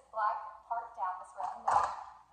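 A woman talking, with a single hard plastic clunk about three-quarters of the way through as the push handle of a toy ride-on truck walker is tilted and shifted on its mount.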